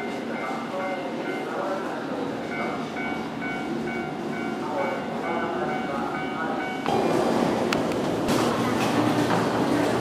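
A JNR 115 series electric train pulling slowly into the platform, with steady high tones over its running noise. About seven seconds in, the sound cuts to louder station concourse noise with voices.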